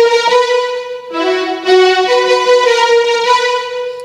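Electronic keyboard playing two held chords: the first sounds on, and a second chord comes in about a second in and is held nearly to the end.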